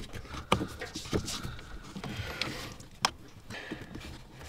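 Quiet clicks and rubbing as a stainless steel pedal cover with a rubber grip is pushed and worked around a car's clutch pedal by hand. The sharpest click comes about three seconds in.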